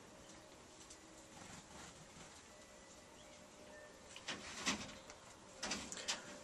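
Quiet room tone, with a few brief, faint sounds a little after four seconds in and again near the end.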